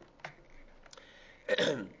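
A man clearing his throat once, a short vocal noise with a falling pitch about one and a half seconds in, after a faint click.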